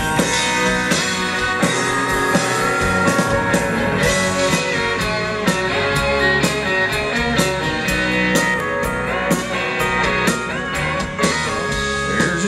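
Live band playing the instrumental intro of a country-rock song: distorted electric guitar through a Marshall amp over a drum kit, with no singing yet.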